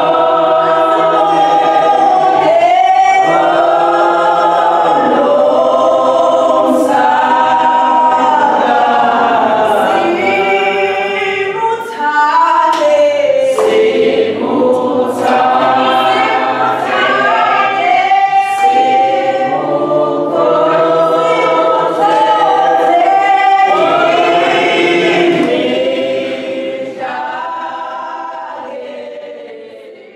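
A choir singing, fading out over the last few seconds.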